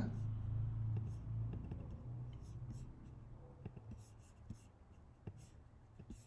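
Sparse, faint computer mouse clicks, with a low hum that fades out about two seconds in.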